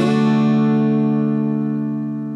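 Outro music: a single strummed guitar chord ringing out and slowly fading.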